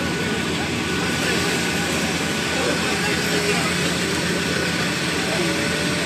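Excavator's diesel engine running steadily during demolition, mixed with street noise and indistinct bystander voices.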